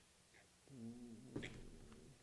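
Mostly very quiet, with a man's short, low hum about two-thirds of a second in, followed by a sharp click.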